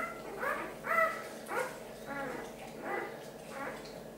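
A newborn puppy crying just after birth: a run of about seven short, high, squeaky cries, one every half second or so, growing fainter toward the end.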